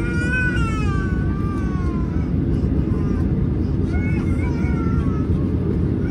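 Steady low rumble of engine and air noise inside a Boeing 737-800's cabin as it taxis slowly. A high, wavering cry rises and falls over it twice, once at the start and again about four seconds in.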